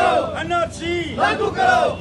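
A crowd of men shouting protest slogans in unison, loud phrases repeated in a steady rhythm.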